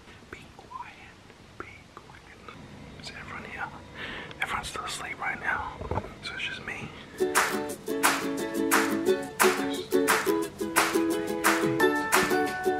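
Faint whispered speech with a few handling clicks, then, about seven seconds in, background music starts: a plucked-string tune over a steady beat.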